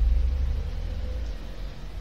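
Low steady background rumble with a faint thin hum, in a pause between spoken words.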